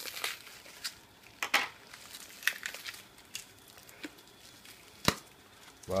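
Green plastic wrap crinkling and tearing in irregular crackles as it is pulled off a part by hand, with one sharp tap about five seconds in as a folding knife is set down on the bench.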